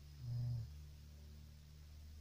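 A low steady hum, with one short, louder low-pitched tone lasting about half a second near the start.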